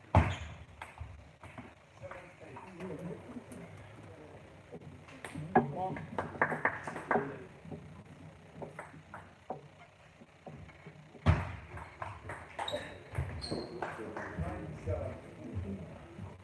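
Table tennis rally: the ball clicking off the bats and bouncing on the table in quick sharp ticks, with loud knocks just after the start and about eleven seconds in.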